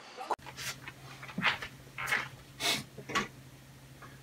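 About five short, soft breathy noises, like a person breathing or sniffing, spread over a few seconds, over a steady low hum. The background changes abruptly a moment in.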